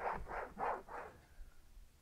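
A microfiber towel rubbed back and forth over a textured plastic van door panel, about four rubbing strokes a second, dying away about a second in.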